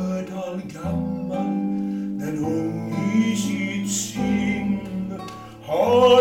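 Classical nylon-string guitar playing a song accompaniment, with plucked chords and low bass notes. A man's singing voice comes in near the end.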